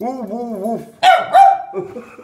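Small dog vocalizing: a wavering whine for most of the first second, then a loud, drawn-out bark.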